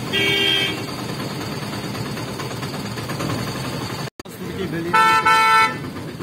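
Vehicle horns honking in heavy street traffic: one short honk right at the start, then, after the sound drops out for a moment, two quick loud honks in a row near the end, over a steady hum of traffic.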